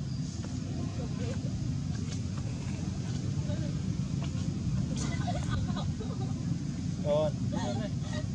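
Steady low outdoor rumble, like distant traffic or wind. A few short voice-like calls come over it in the second half, the clearest about seven seconds in.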